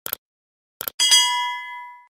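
Sound effects for a subscribe button and notification bell: two short clicks, then a bright bell ding about a second in that rings and fades over about a second.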